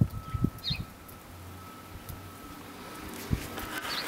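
Quiet outdoor snowstorm ambience with low handling thumps on a hand-held microphone in the first second and again near the end, and one short high chirp from a small bird about half a second in. A faint steady thin tone sits underneath.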